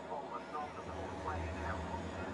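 Racing trucks' diesel engines running as the pack comes through. A low rumble swells about a second in.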